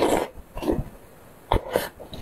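Close-miked eating: a bite into a pan-fried bun right at the start, then wet chewing and lip smacking in short bursts, two of them close together near the end.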